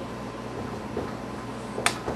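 Steady low room hum, with one short sharp click near the end.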